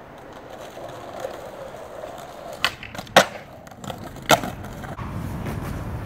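Skateboard wheels rolling on concrete, then a sharp pop of the tail and a loud clack of the board landing about three seconds in, with another clack about a second later.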